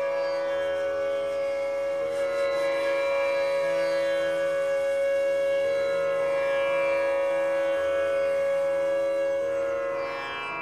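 A bansuri (Indian bamboo flute) holds one long, steady note over a droning bed of strings.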